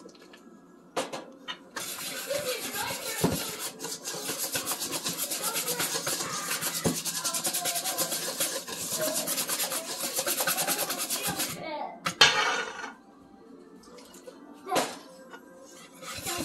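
Wire whisk beating beer batter in a stainless steel mixing bowl: fast, even scraping strokes against the metal, starting about two seconds in and stopping about ten seconds later.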